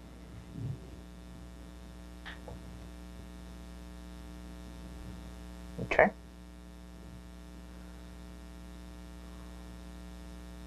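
Steady electrical mains hum with its evenly spaced overtones, constant throughout, under a single short spoken word about six seconds in.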